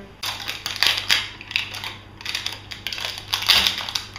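Crinkling and tearing of the plastic wrapper on an LOL Surprise toy ball as it is peeled open by hand: a string of crackly rustles, loudest about a second in and again near the end.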